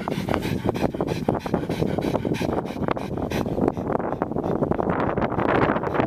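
A Boston terrier panting close to the microphone, mouth open, mixed with wind buffeting the microphone: a rough, crackly, uneven noise throughout that grows fuller in the last two seconds.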